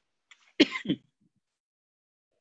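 A man clearing his throat, two quick rasps about half a second in.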